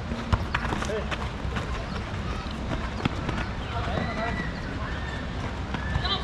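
A football kicked with a sharp thud about a third of a second in, and another knock about three seconds later, while players call out to each other in the background.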